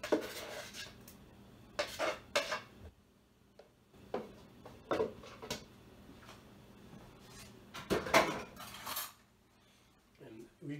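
A kitchen knife knocking and scraping against a plastic tub and a stainless steel mixing bowl as cilantro puree is scraped out: scattered sharp knocks, with a longer and louder run of scraping and clatter about eight seconds in.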